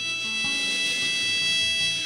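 Harmonica holding one long high note over fingerpicked acoustic guitar notes in a slow accompaniment.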